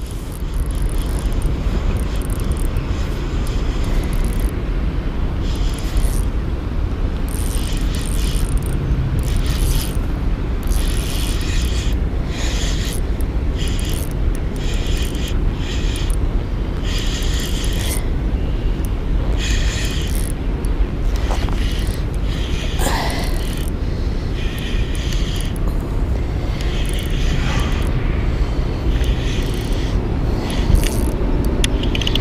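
Spinning reel being worked while a hooked fish is played in: short, irregular bursts of reel whirring and clicking, over a steady low rumble.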